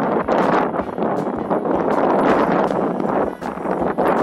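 Loud wind buffeting the microphone, a steady rushing noise with a few short clicks through it.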